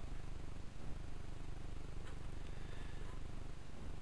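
Steady low rumble of an idling vehicle engine, heard from inside the cab.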